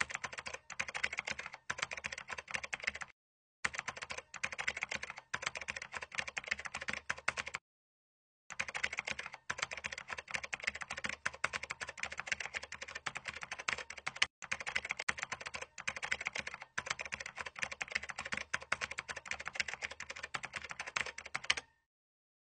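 Computer keyboard typing: fast runs of key clicks, broken by two short pauses, about three and eight seconds in.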